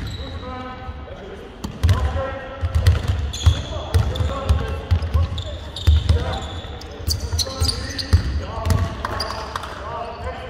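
Basketball dribbled on a hardwood court, with repeated low thumps, mixed with players' voices in a large, echoing hall.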